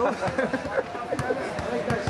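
Men's voices talking and calling over one another, with a couple of short sharp knocks.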